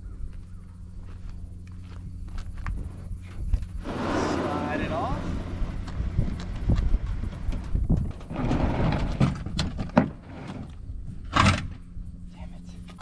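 Plastic hull of a Sun Dolphin American 12 jon boat scraping and sliding over a pickup's bed and tailgate as it is pulled out onto a wooden dolly. There are two long stretches of scraping with scattered knocks, and a sharp knock near the end.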